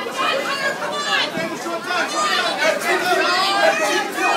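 Several voices talking and calling out at once, overlapping without a break: spectators' chatter around a wrestling mat in a large room.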